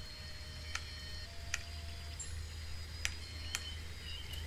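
A low steady hum with four faint, sharp clicks scattered through it.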